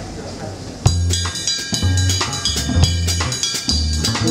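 A jazz trio of acoustic guitar, upright double bass and drum kit starts playing suddenly about a second in, with drum hits and deep bass notes under the guitar; before that, murmured voices.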